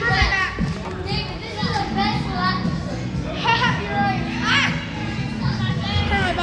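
Children shouting and squealing with high-pitched voices as they play, with music playing in the background.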